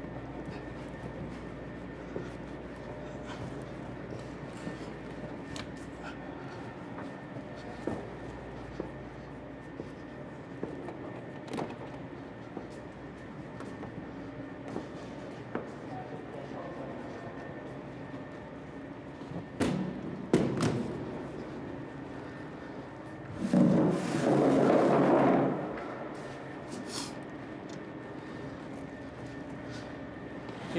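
A large sheet-metal storage box being moved by hand: scattered light knocks, two sharp bangs about two-thirds of the way through, then a loud scrape of about two seconds as it is dragged across the floor. A steady hum runs underneath.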